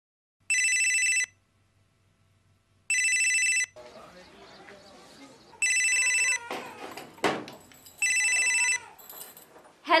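Cordless phone ringing: an electronic, fluttering trill that sounds four times, each ring under a second long and about two and a half seconds apart. A short knock comes between the third and fourth rings.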